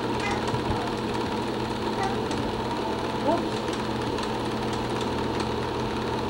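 Steady mechanical whirring and clatter with an electrical hum, typical of a home-movie film projector running, with faint voices behind it.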